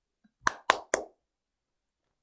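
Three sharp knocks in quick succession, about a quarter second apart, starting about half a second in, with dead silence around them.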